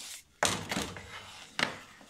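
Handling knocks from a plastic-bodied angle grinder being turned over in the hands: two sharp clunks, about half a second in and again about a second and a half in.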